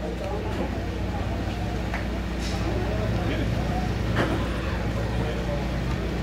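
Ambience of an open-air gathering: indistinct voices murmuring over a steady low hum, with a few faint clicks.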